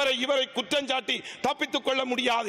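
A man speaking in Tamil without a pause, giving a speech.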